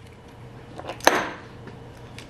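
Hand work on a metal compressor assembly: light handling noise, then a single sharp metal clink about a second in that rings briefly, as bolts and tools are handled.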